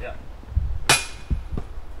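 A single sharp metallic clang about a second in, with a short ringing tail, from a disc striking a metal disc golf basket. A few low thumps come before and after it.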